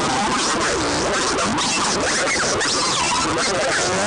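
Electric guitar played through distortion and glitch effects in a noise freakout: a constant dense wall of noise with many quick pitch swoops up and down.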